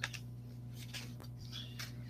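Faint rustles and a few light clicks of items being handled in a package box, over a steady low electrical hum.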